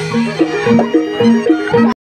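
Live traditional Indonesian music in gamelan style: a repeating pattern of short struck notes stepping up and down over a low drum, with a brief drop-out in the recording just before the end.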